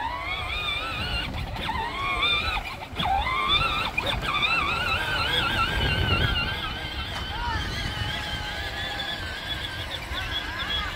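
Electric motors and gearbox of a John Deere Gator ride-on toy whining as it drives over grass. The pitch rises as it picks up speed, once at the start and again about three seconds in, then wavers as it bumps along, over a low rumble from the tyres on the lawn.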